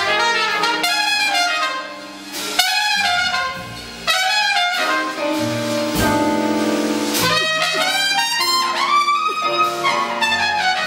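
Trumpet playing a jazz solo in melodic phrases over the band's accompaniment, with two short breaths between phrases.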